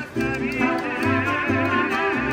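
Mariachi band playing live: several violins with vibrato over a strummed guitar and a regular pattern of low bass notes. The sound drops out briefly right at the start, then carries on steadily.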